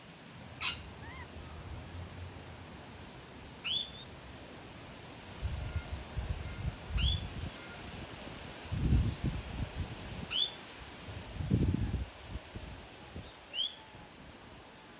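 A bird gives a short, high chirp that slides upward, five times at about three-second intervals. Soft low thuds and rustles come in the middle of the stretch.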